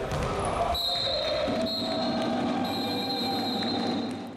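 Futsal match sounds in an echoing sports hall: the ball being kicked and bouncing on the wooden court, with players' voices. A steady high tone runs underneath from about a second in.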